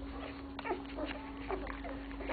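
Newborn Dalmatian puppies giving a few short, faint whimpering squeaks while nursing, over a steady low hum.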